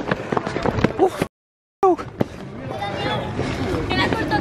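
Quick footsteps and heavy camera-handling noise from people running on brick paving, mixed with shouts and breathless voices. Just over a second in, the sound cuts out completely for about half a second, then voices resume over crowd noise.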